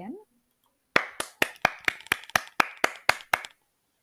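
Hands clapping quickly and evenly, about eleven claps over two and a half seconds, recorded as a two-second training sample.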